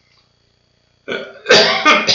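Near silence, then about a second in a man coughs loudly to clear his throat.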